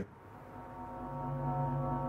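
Background score of dark, sustained held tones fading in and slowly growing louder, with a low held note joining about a second in.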